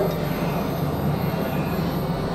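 Dense, steady wash of layered experimental electronic noise and drone music: a low hum beneath a thick noisy haze, with no clear beat.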